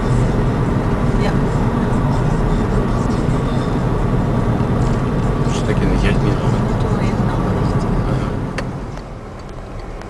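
Car cabin road and engine noise while driving on a country road, a steady low rumble that eases off about nine seconds in as the car slows.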